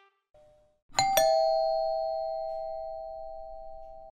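Two-note ding-dong doorbell chime, a higher note then a lower one struck a fifth of a second apart about a second in. Both ring on together and fade slowly over the following three seconds.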